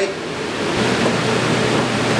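Steady rushing noise of kitchen ventilation. A low hum joins it about three quarters of a second in.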